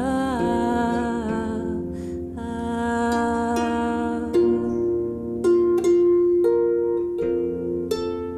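Harp music: held, ringing notes with a brief slide in pitch at the start, then from about halfway a run of separate plucked notes.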